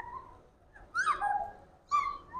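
Birds calling in short chirps: a few quick sliding notes about a second in, and more near the end.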